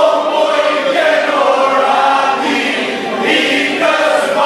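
A group of men singing together in long held notes, one voice on a microphone with the others joining in, as in a traditional Dibran men's song.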